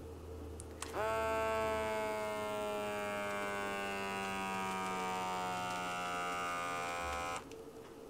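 Small electric pump of an automatic blood pressure monitor buzzing as it inflates an arm cuff. Its pitch sinks slowly, and it cuts off suddenly about six seconds later. A faint click comes just before it starts.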